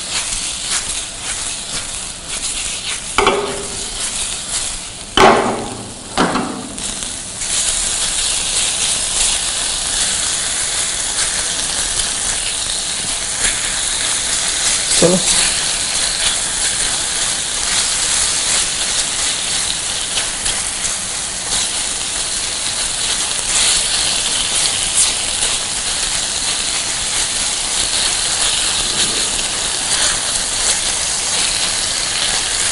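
Marinated chicken pieces sizzling steadily in a stainless steel frying pan over a gas flame as they are half-cooked, stirred with a spatula. A few louder stirring strokes come in the first seven seconds, then the sizzle runs on evenly.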